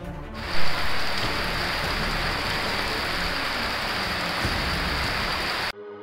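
Heavy rain pouring down: a dense, steady hiss that cuts in suddenly just after the start, swells briefly right after it begins, and cuts off shortly before the end.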